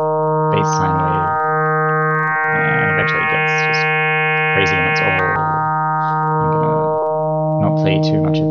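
FM synth tone from a two-operator sine patch, one sine operator frequency-modulating a sine carrier at the same ratio, holding a steady pitch. As the modulator level is swept up, the tone grows brighter and buzzier with more overtones, peaking about two to five seconds in, then mellows again as the level comes back down.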